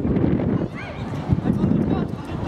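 Wind buffeting the camera microphone in a steady low rumble, with a short, distant high shout about two-thirds of a second in and a single dull thump just past the middle.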